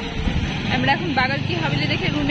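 Street sound of voices talking, with a motor vehicle's engine running underneath as a low steady hum from about a second in.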